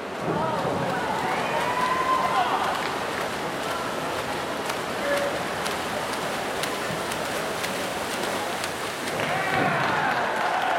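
Spectators shouting and cheering over the churning splash of freestyle swimmers sprinting, in an echoing indoor pool; the yelling grows louder about nine seconds in as the swimmers near the wall.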